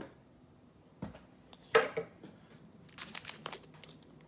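A cardboard trading-card box being handled and set down on the table: a knock about a second in, a sharp louder knock just before the two-second mark, then a quick run of crinkling from the packaging.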